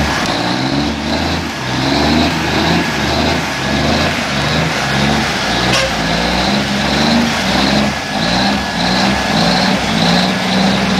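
Heavy diesel engine of a loaded log truck running, its sound pulsing about twice a second. One sharp click comes a little past halfway.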